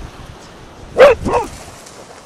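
Cardigan Welsh Corgi barking twice in quick succession about a second in, the first bark the louder.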